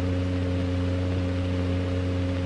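A steady low hum made of several held tones stacked together, with no change in pitch.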